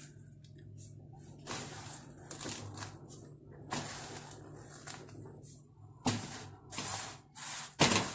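Metal spoon scooping and stirring dry rolled oats in a metal baking tray: irregular scraping, rustling strokes, a few louder ones in the second half, over a low steady hum.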